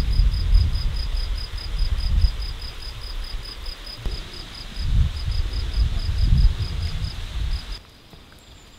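An insect, likely a cricket, chirping high and fast, about five chirps a second, over a faint hiss. A low, uneven rumble of wind on the microphone swells and fades under it. It all cuts off just before the end.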